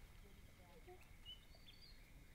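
Near silence: faint outdoor background with a few short, high bird chirps in the second half.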